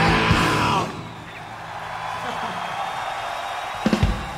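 A live rock band with distorted guitars and drums stops abruptly on its final hit about a second in, leaving a crowd cheering and yelling. A sharp thump comes near the end.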